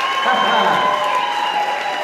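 Audience and competitors applauding and cheering, with a long held high call over the clapping that breaks off near the end.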